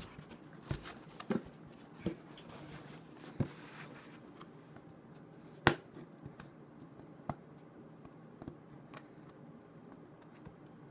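Folding pocket knife cutting and scraping along packing tape on a cardboard mailing box, with scattered sharp clicks and knocks as the box and blade are handled; the loudest knock comes a little past halfway.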